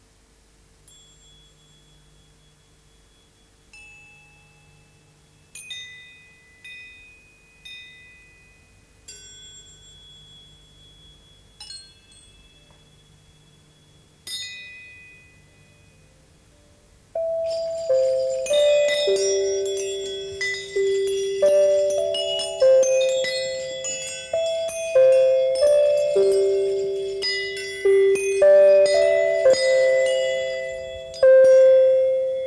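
Small metal percussion ensemble of finger cymbal, struck metal bars, hanging copper pipes, bell tree and metallophone playing a piece that moves between quiet and loud. For about the first 17 seconds single metal strikes ring out sparsely and softly; then it turns suddenly loud, with a dense run of metallophone notes and other bell-like strikes ringing over one another.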